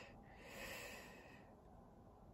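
Near silence, with a faint breath through the nose or mouth in the first second or so.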